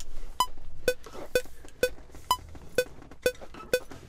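Cubase metronome pre-count: eight short beeping clicks at a steady tempo of about two a second. The first click of each group of four is higher in pitch, counting in two bars before recording starts.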